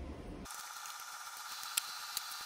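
Hands working metal parts at a bench vise: faint handling noise, then a single sharp metallic click near the end.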